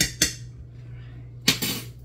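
A metal spoon tapped twice in quick succession on the rim of a metal stockpot, knocking off the last of the Worcestershire sauce. About a second and a half in comes a single louder clunk with a short ring: the glass sauce bottle set down on the countertop.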